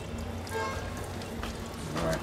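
Tap water running over hands and splashing into a clay pot basin as they are washed at a tap on a terracotta water pot.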